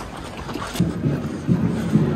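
Wind rumbling on the microphone of a camera carried at running pace, in low uneven surges that grow stronger about a second in.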